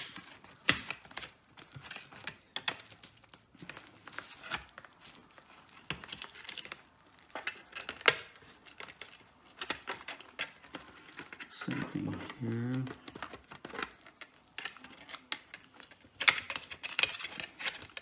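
Plastic pry tool scraping and clicking irregularly against the plastic tabs and metal plate of an Asus X202E-series laptop as the clips are worked loose, with some crinkling of the bubble wrap underneath.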